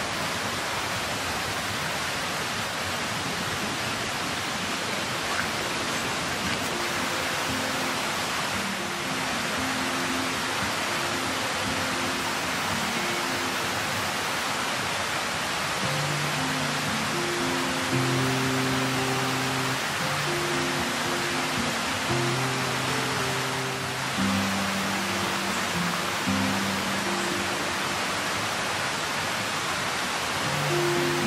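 Steady rushing of a mountain stream, with soft background music of low held notes that comes in faintly and grows fuller from about halfway.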